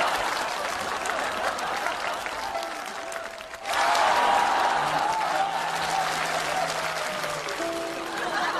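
Theatre audience applauding, the applause swelling again about halfway through, with background music coming in over it.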